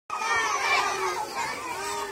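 A crowd of children's voices, many talking and calling out at once and overlapping.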